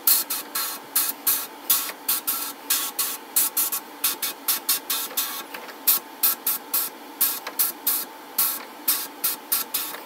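Sandblasting gun fired inside a blast cabinet in short, irregular bursts of hiss, two or three a second, as abrasive is blasted against a small metal toy-truck part.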